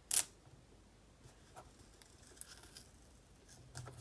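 A brief rustling scrape right at the start as washi tape and the plastic arm of a paper trimmer are handled, followed by a few faint small clicks of the tape being adjusted on the trimmer.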